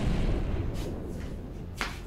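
Explosion sound effect: a sudden blast of noise that slowly dies away, with a short sharp crack near the end.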